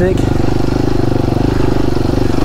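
Enduro dirt bike engine running steadily at low speed, holding an even pitch with no revving.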